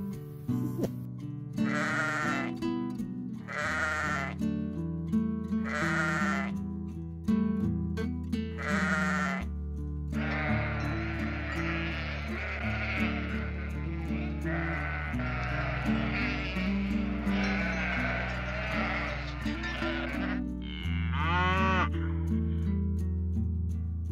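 Sheep bleating over background music. There are four separate bleats about two seconds apart, then for about ten seconds a flock bleating over one another.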